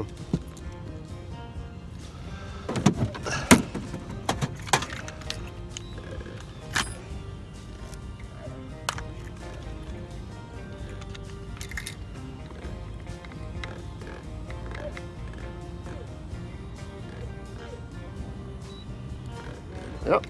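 Quiet background music, with a few sharp knocks and clatters about three to five seconds in and a couple more a few seconds later.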